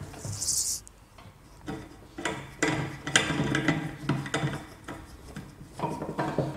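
Green plastic pipe fittings being handled and screwed onto the threaded end of a stainless-steel magnetic water treatment unit: rubbing and scraping with irregular light clicks and knocks of plastic against metal and the tabletop. A short hiss is heard at the very start.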